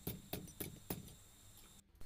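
Hammer striking car-spring steel on an anvil, four light blows about four a second that stop about a second in. The steel is being worked at a black heat, already cooled below a forging colour.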